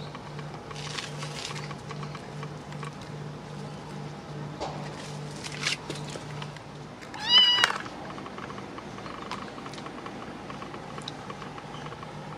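A small kitten meows once, a short call that rises then levels off, about seven seconds in.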